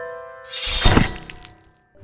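Logo jingle of a video intro: held chime-like notes fading out, then a short noisy sound effect about half a second in that dies away within a second.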